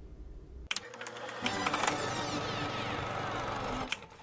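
An edited-in transition sound effect: a rapid clicking rattle starting about a second in, with a cascade of falling tones sweeping down over it, cutting off just before the end.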